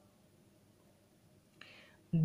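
Near silence: room tone, with a short faint breath-like hiss near the end.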